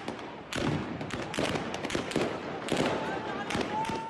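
Raw protest-clash audio: a shouting crowd with many sharp cracks of shots, several a second, in rapid irregular succession.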